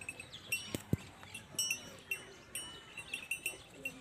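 Small metal bells tinkling in short, irregular rings throughout, with two sharp clicks close together about a second in.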